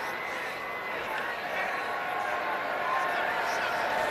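Stadium crowd noise: a steady din of many voices, growing slightly louder toward the end.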